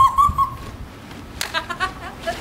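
A high-pitched squeal held for about a second, then a sharp click and a few quick high yelps near the end.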